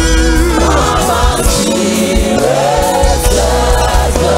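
Gospel choir singing worship music, with held, gliding notes over a band's deep bass.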